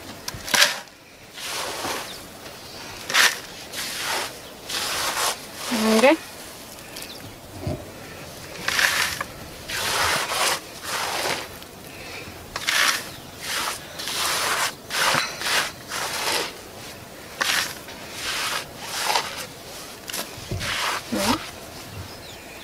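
Dry germinated maize kernels (guiñapo) and coarse meal being scooped up by hand and let fall back onto a flat grinding stone, making a run of short, irregular rustling hisses about once a second.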